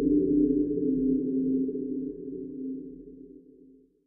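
A low, steady drone made of several held pitches, part of the film's title soundtrack, fading out gradually over the last two seconds and ending just before the picture cuts.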